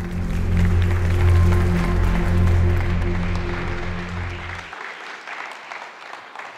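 Audience applauding over the low, sustained closing notes of an intro music track. The music cuts off about three-quarters of the way through, and the applause carries on, fading.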